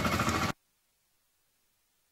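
Outdoor crowd background noise that cuts off abruptly about half a second in, followed by dead silence.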